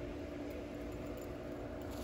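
A steady hum with a few light clicks and rustles.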